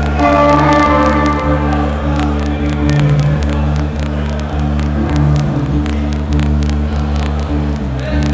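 Live rock band playing, with a sustained electric bass and guitar underneath, a melodic line over the top in the first two seconds and sharp percussive hits throughout, picked up by a photo camera's built-in microphone.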